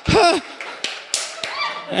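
A man's short laugh into a microphone, followed by a few scattered sharp taps.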